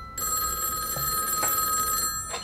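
Landline telephone ringing: one sustained ring of about two seconds, starting just after the beginning.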